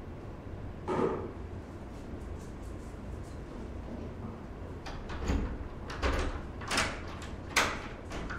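A room door being opened and shut, with a string of sharp knocks and clunks of the door and its handle in the second half, the loudest near the end, after a single clunk about a second in.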